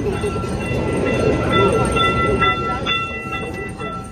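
Small open-car tourist train running, with a steady high-pitched tone sounding over its rumble for a couple of seconds in the middle.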